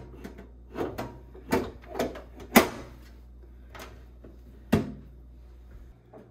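Metal bread pan being set and locked into a Cuisinart bread machine and the machine's lid shut: a string of knocks and clicks, the sharpest about two and a half seconds in and another near the end.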